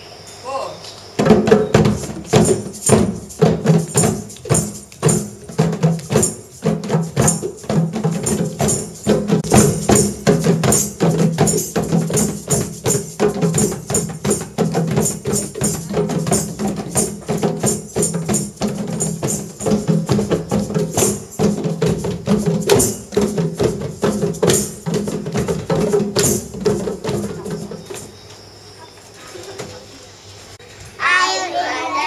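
A group of children playing djembe-style hand drums and tambourines together in a fast, steady rhythm, with wooden sticks clacking. It starts about a second in and stops a couple of seconds before the end.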